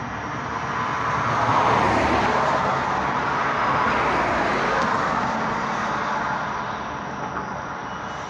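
A road vehicle passing by, its tyre and engine noise swelling over the first couple of seconds and fading away over the last few.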